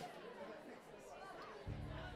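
Faint crowd chatter between songs, with a single low electric bass guitar note starting suddenly near the end and held steady for about a second.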